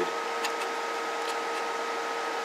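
Steady background hiss on a radio repair bench, with a faint steady whine and a lower steady tone, and a couple of faint ticks.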